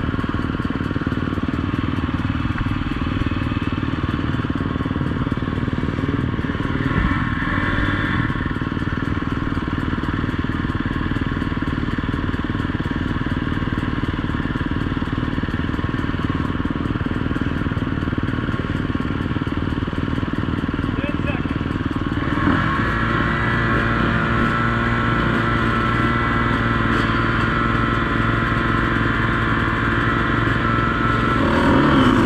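Dirt bike engines idling at an enduro start line, a steady, even running note. About 22 seconds in the sound changes suddenly as another engine note joins in at a higher, steady pitch.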